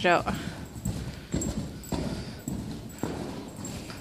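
Hoofbeats of two loose horses cantering on the sand footing of an indoor riding arena: dull, muffled thuds about twice a second. A short high cry falling in pitch sounds at the very start.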